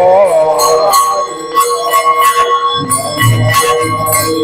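Temple hand bell rung steadily during an aarti lamp offering, its ringing sustained, with regular sharp metallic clashes like small hand cymbals keeping time. Low thumps join in after about three seconds.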